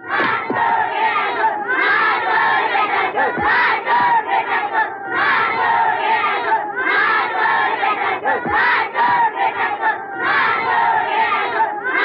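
A crowd of many voices shouting together without a break, in a film soundtrack.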